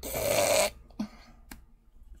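A woman's short, raspy, throaty noise of discomfort, like a choked groan, lasting under a second, as she strains against a tight costume collar at her throat. Two faint clicks follow.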